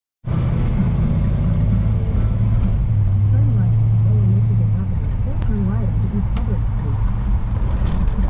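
The 1955 Chevrolet's engine running steadily under light throttle while driving slowly, heard from inside the cabin as a low, even drone that swells a little for a couple of seconds near the middle.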